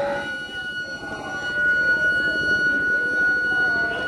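Public-address microphone feedback: a steady high-pitched whine that sets in a moment after the recitation stops and holds on one pitch, over a low background murmur.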